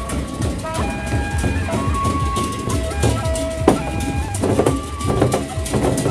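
Sasak gendang beleq ensemble playing: deep strokes on the large barrel drums and sharp cymbal-like hits under a melody of long held notes that step from one pitch to another.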